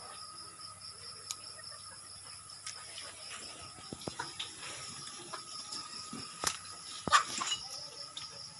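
Insects calling steadily, with a high, slightly pulsing trill. Over it come scattered clicks and rustles of leaves and stems being handled, the loudest a short crackling rustle about seven seconds in.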